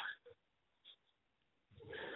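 Near silence on a telephone line, a pause in the call: the last of a voice fades out at the start and faint line hiss returns near the end.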